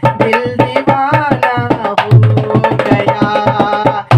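Dholak played by hand in a steady, quick rhythm of sharp strokes over deep bass thumps, with a man humming a song melody along with it.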